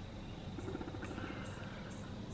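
Faint outdoor morning ambience: a low hum, a short rapid low trill about half a second in, and soft high chirps every half second or so.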